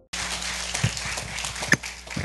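Live room sound in a church sanctuary: a steady low electrical hum with a few short knocks and clicks as a man steps up to the pulpit and takes up a handheld microphone.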